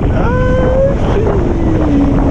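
Heavy wind rushing over the camera microphone while riding a kiteboard. A voice calls out over it: a short held call early on, then a long call sliding down in pitch.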